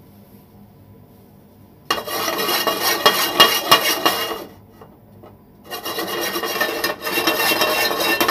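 Frying pan shaken back and forth on a gas stove's grate while dry-roasting a few chickweed leaves, giving a loud rasping scrape. It comes in two spells, from about two seconds in and again from about six seconds in, with a short pause between.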